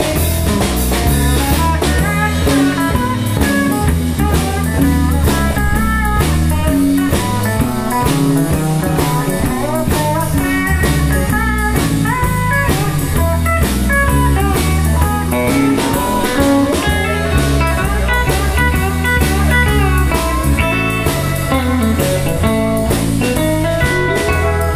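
Live country band playing an instrumental break with no vocals: a lead melody over a moving electric bass line, rhythm guitar and a steady drum beat.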